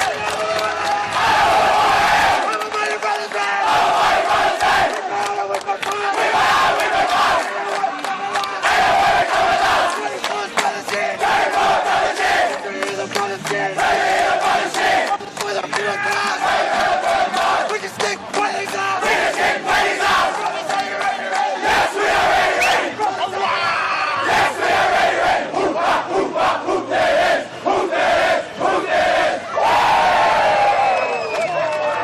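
A team of rugby league players chanting and singing together in a loud group, with shouts and whoops, as a victory chant.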